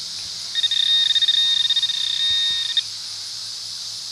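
Metal detector's electronic alert tone, a high pulsing tone lasting about two seconds that starts about half a second in and cuts off abruptly, signalling metal in the dig hole.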